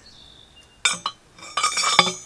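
Metal rod of a homemade shell crusher clinking and rattling against its tube as it is lifted and handled. There is one sharp ringing clink about a second in, then a quick run of clinks near the end.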